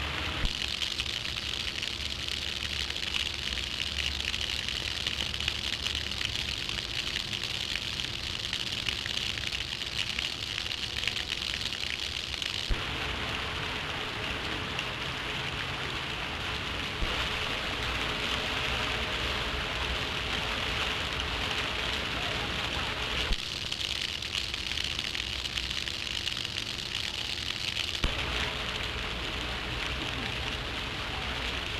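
Steady hiss with scattered crackles and clicks and a faint hum underneath: the surface noise of an old film soundtrack. Its tone changes abruptly about 13 and 23 seconds in.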